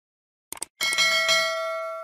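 Subscribe-button animation sound effect: a short mouse click, then a notification bell ding that swells twice and rings on, slowly fading.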